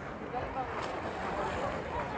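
Swimming pool ambience during a race: a steady wash of swimmers splashing in the water, mixed with wind on the microphone and a faint murmur of spectators' voices.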